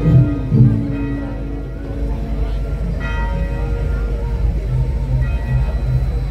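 Bells ringing: struck tones that sound right at the start and again about three seconds in, each fading out slowly, over background music and crowd chatter.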